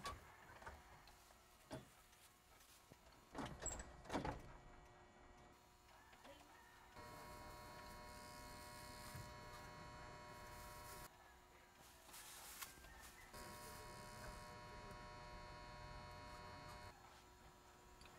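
A mobile phone buzzing on vibrate with an incoming call: two long steady buzzes of about four seconds each, a couple of seconds apart. A few soft knocks come before them.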